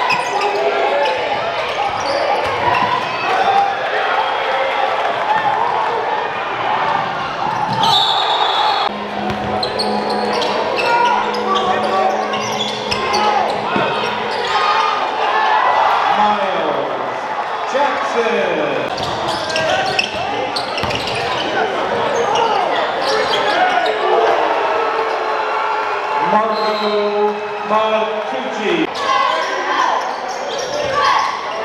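Basketball game sounds in a gymnasium: a ball dribbling and bouncing on the hardwood floor amid the chatter and shouts of players and spectators, echoing in the large hall.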